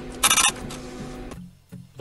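Fiscal receipt printer printing a cash receipt in a short burst about a quarter-second in, over soft background guitar music that fades out after about a second and a half.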